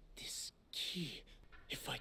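Speech only: a young man's quiet voice from a dubbed anime, mostly breathy hiss with a few brief spoken syllables.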